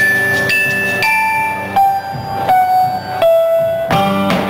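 A live band playing an instrumental passage, with a melody of long held notes that step down in pitch over the last three seconds.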